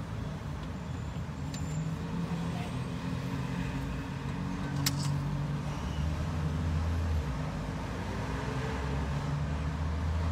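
Car cabin noise: a steady low engine hum with a little road rumble, its pitch shifting slightly, and one short click about five seconds in.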